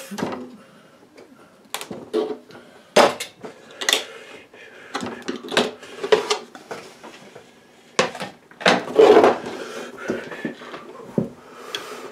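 Irregular knocks, clicks and clatter of painting gear being handled and moved as a paint palette is lifted away, with the loudest burst of clattering about nine seconds in.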